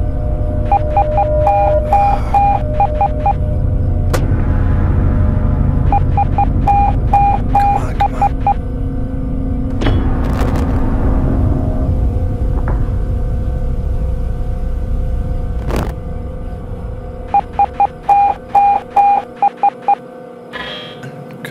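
An SOS sent in Morse code as beeps, three short, three long, three short, repeated three times over a steady low rumble and hum.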